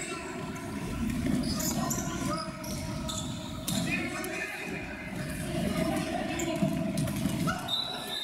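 Players' indistinct calls and shouts during an indoor futsal game, echoing in a large sports hall, with a few sharp thuds of the ball being kicked; the loudest comes about six and a half seconds in.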